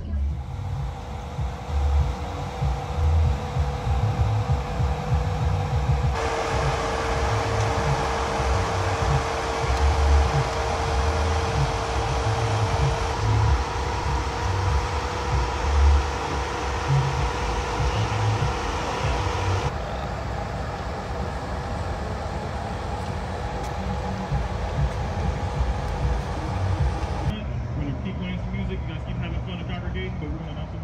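Outdoor car-show ambience: irregular low rumbling gusts on the microphone, a steady hum, and indistinct voices. The background shifts abruptly several times.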